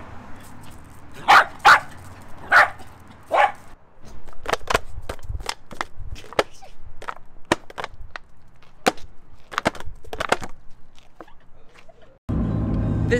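A small terrier barks four short times, then a quick run of sharp crackles and taps follows as a plastic water bottle is squeezed and waved at the dog.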